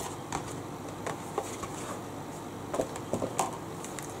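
Scattered soft clicks and taps as an eyeshadow palette and makeup brush are handled, over a steady low background hiss.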